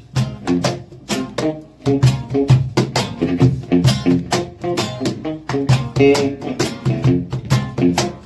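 Acoustic guitar strummed in a quick run of short, choppy strokes, played without singing.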